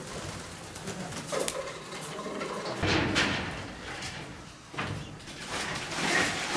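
Racing pigeons cooing in a loft, amid steady rustling and light clicks, with a louder rustling stretch about three seconds in.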